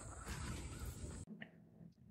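Faint outdoor background hiss that cuts off to near silence about a second and a quarter in, with one brief faint chirp just after the cut.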